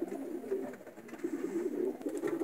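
Racing pigeons cooing in a loft, a low steady cooing.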